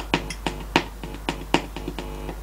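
Loudspeaker of a home-built push-pull tube amplifier buzzing with mains hum and crackling in irregular sharp clicks as a finger touches the grid of one of its 6L6-type output tubes. The buzz is the sign that this side of the output stage is working.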